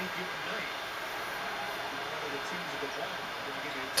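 Quiet, steady room hiss with a few faint, indistinct murmurs and no distinct handling sounds.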